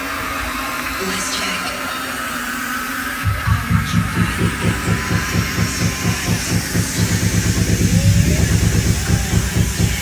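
Live electronic dance music through a festival PA, heard from within the crowd: a pulsing bass beat comes in about three seconds in and builds louder, with crowd voices over it.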